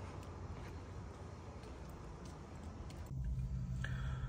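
Quiet background ambience with no distinct event. About three seconds in it switches to a steady low hum.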